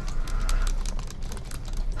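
Computer keyboard typing: a quick, irregular run of key clicks over a low steady hum.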